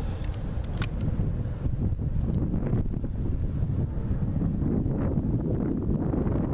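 Wind buffeting the microphone, a steady low rumble, with a sharp click about a second in.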